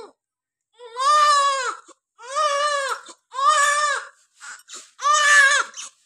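Newborn baby crying: four wails of about a second each with short pauses for breath, and a brief whimper between the last two.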